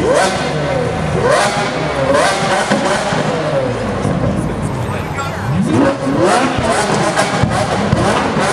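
Sports car engines revving hard in several sharp blips, each rising quickly in pitch and falling back: one right at the start, two more in the next two seconds, and another pair about six seconds in, over street and crowd noise.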